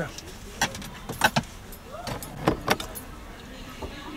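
Irregular sharp clicks and taps inside a car cabin, about eight of them spread over a few seconds, some in quick succession.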